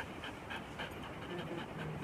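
German Shepherd dog panting quickly and steadily, mouth open.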